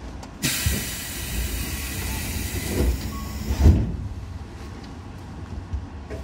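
Compressed air on a Tobu 10000 series electric train hissing loudly for about three seconds, starting suddenly about half a second in, with a couple of low thuds. The carriage's steady low rumble lies underneath.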